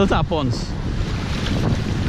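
Wind buffeting the microphone, a steady low rumble, with a shouted voice trailing off in the first half second.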